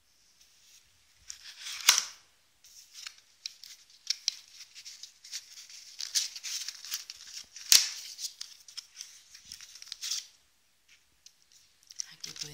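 Stiff cardstock pages and a pull-out paper flap of a handmade scrapbook album rustling and scraping as they are handled, with two sharp snaps of card, one about two seconds in and one near eight seconds.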